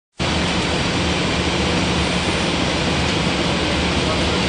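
Steady rushing noise on an Airbus A319's flight deck during the approach: airflow over the airframe with a low engine hum underneath, cutting in abruptly right at the start.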